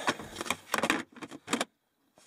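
Hard plastic storage tote being handled: a run of sharp clicks and knocks as its snap-on lid is worked and set back, with rustling between, stopping shortly before the end.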